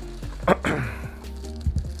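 Background music with steady held notes, and a single short click about half a second in.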